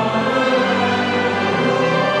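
Choral music with orchestra: a choir and instruments holding slow, sustained chords.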